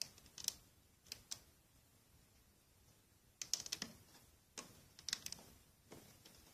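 Faint, irregular small clicks and ticks from a loom hook working rubber bands on the plastic pins of a Rainbow Loom. They come singly and in short clusters as bands are picked up and pulled over the pins.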